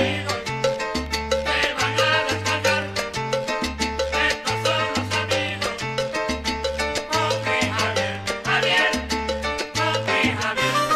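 Salsa band recording played from a vinyl LP: a bass line repeats short note patterns under steady percussion, with piano and horns above.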